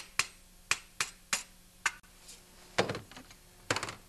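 Hammer tapping a flat screwdriver against the bent-over steel lock tabs on a small engine's muffler bolts to knock them back. There are six sharp metallic taps at irregular half-second spacing, then two heavier clattering knocks near the end.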